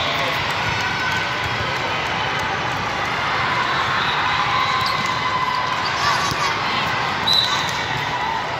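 Steady hubbub of a big sports hall during volleyball play: many voices mixed with volleyballs being struck and bouncing on the courts, with a brief louder sound about six seconds in and another near the end.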